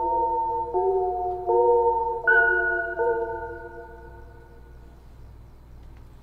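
Melody pattern from a Native Instruments Massive synthesizer played back in Maschine: chords of several held notes changing about every three-quarters of a second, with a higher note entering a little past two seconds and ringing out. The notes fade away about four seconds in, leaving a faint low hum.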